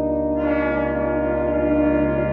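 Brass octet holding a sustained chord, with brighter, higher notes swelling in about half a second in. The low tuba and trombone notes hold underneath.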